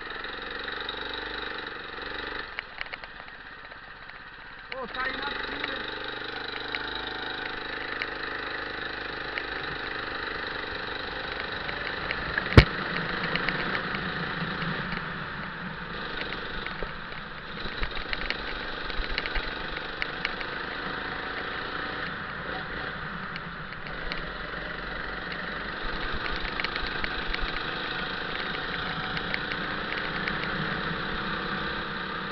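Go-kart engine running steadily, louder from about five seconds in. A single sharp knock comes about twelve seconds in.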